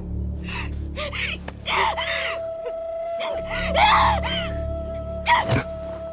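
A woman's distressed gasping cries and shouts, several of them in a row, over dramatic background music with a low drone and a long held note.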